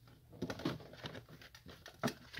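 Faint, irregular rustling and light taps of tarot cards being handled on a table.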